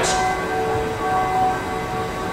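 Steady background hum of the room, with several faint held tones, during a pause in a man's talk; the tail of his voice dies away at the very start.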